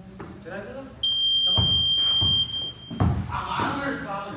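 A high-pitched electronic buzzer sounds once, about a second in, and holds for about a second and a half before fading. Thuds of a basketball and players' voices come around it.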